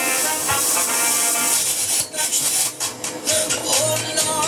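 Music from a radio station playing through a Unitra AT9115 stereo receiver, coming in cleanly; from about halfway in a regular percussion beat is heard.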